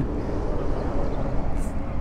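Steady low outdoor rumble with no clear tone, and a faint, brief hiss about one and a half seconds in.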